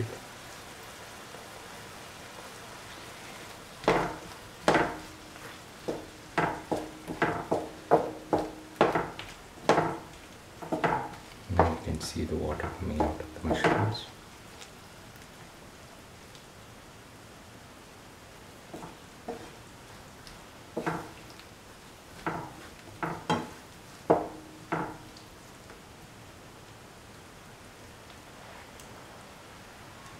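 Mushrooms and vegetables sautéing in a pan with a steady faint sizzle, while a stirring utensil scrapes and knocks against the pan: a dense run of strokes from about four to fourteen seconds in, and a shorter, sparser run around twenty to twenty-five seconds.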